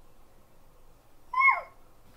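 Infant making one short, high-pitched vocal squeal that falls in pitch, about a second and a half in, over faint room noise.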